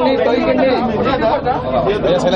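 Speech only: a man talking with other voices chattering over him in a large room.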